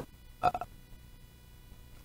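A pause in speech: a man's short hesitant "uh" about half a second in, then faint room tone with a thin steady hum.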